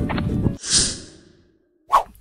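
Music cuts off about half a second in, and a person's breathy sigh follows and fades away. After a moment of silence, a short sharp click comes at the very end and is the loudest sound.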